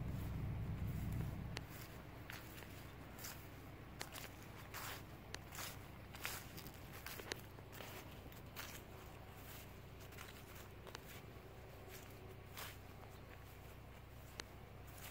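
Faint footsteps of someone walking over grass, a step a little under every second. A low rumble in the first second and a half dies away.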